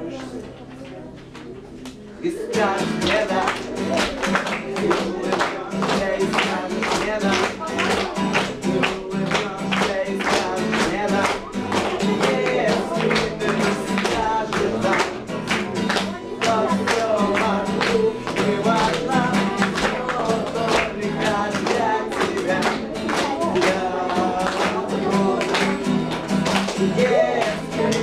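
Acoustic guitar strummed fast and rhythmically, with a young male voice singing over it; after a quieter opening, the strumming starts in full about two seconds in.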